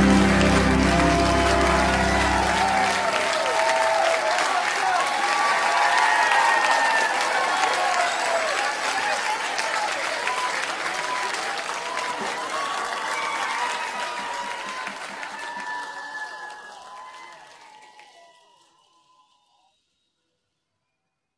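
The backing music's final chord ends about three seconds in, leaving a concert audience's applause and cheers from the live recording, which fade out to silence near the end.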